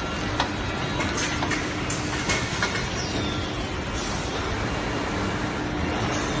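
Solar panel assembly line running: steady machine and conveyor noise with scattered sharp clicks and clacks, and a brief falling whine about three seconds in.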